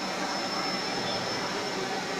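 Small quadcopter drone hovering overhead, its propellers giving a steady high-pitched whine over the murmur of a large crowd.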